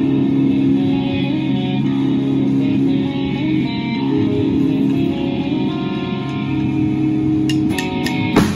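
Live band intro: amplified electric guitar and bass play held, changing notes with no drums. A few drum hits come in near the end.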